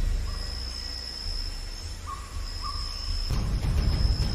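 Outdoor riverside ambience: a steady high insect buzz over a low rumble, with a few short call notes. Louder broad noise builds in the last second.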